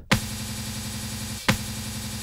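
A one-shot sample played back in Native Instruments Battery 3 with its loop switched on: each hit starts sharply, then a short looped section of the sample repeats over and over as a steady buzzing tone. The sample is triggered twice, about a second and a half apart. The loop crossfade is at maximum, which blends the loop's end into its start so the repeats run smoothly.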